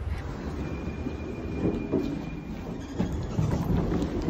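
Footsteps up stone steps and onto a tiled floor, under a steady rumble of handheld-phone movement noise, with a faint steady high tone for about two seconds near the start.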